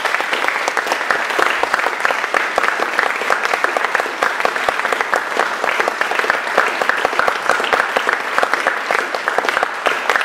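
Audience applauding: dense, steady clapping in a reverberant recital hall.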